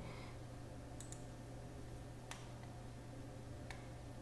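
Faint clicks of a computer mouse: a quick pair about a second in, then single clicks near the middle and near the end, over a low steady hum.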